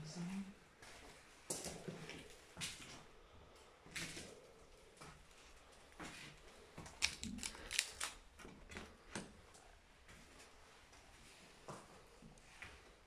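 Faint footsteps and scuffs on cardboard sheets laid over a hard floor, with irregular sharp clicks that bunch together about seven to eight seconds in.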